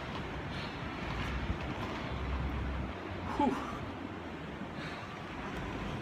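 Seba FR1 inline skates' 80 mm wheels rolling over smooth concrete: a steady rumbling hiss as the skater glides. A breathy exhale comes about three and a half seconds in.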